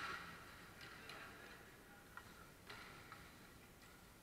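Faint, scattered clacks of hockey sticks during play, four or so sharp clicks spread over a few seconds against near-quiet rink noise.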